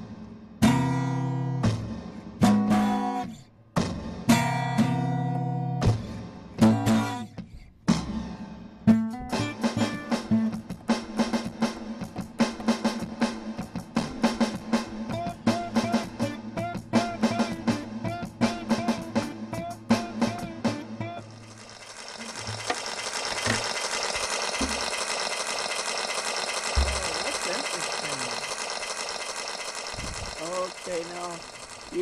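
Acoustic guitar strummed in loud separate chords, then picked in a quick run of notes over a steady low held tone. About 21 seconds in, the music gives way to a steady rushing hiss-like noise that lasts to the end.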